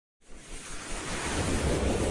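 Logo-intro sound effect: a rushing, whooshing noise with a low rumble underneath, swelling up from silence just after the start.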